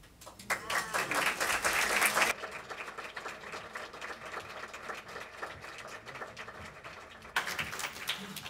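Audience applauding after the choir's song ends, loudest for the first two seconds, then thinning to scattered claps, with a brief louder burst near the end.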